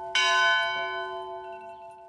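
A bell struck once just after the start, over the fading ring of an earlier stroke; its several tones ring on and die away over about two seconds. The chime marks the Hour of Mercy.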